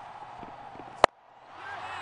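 A single sharp crack of a cricket bat hitting the ball about a second in, over a faint stadium background. It is the shot that skies the ball straight up in the air.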